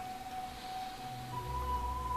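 Soft background music of sustained held notes. About a second and a half in, the held note moves up to a higher one and a deep low note comes in beneath it.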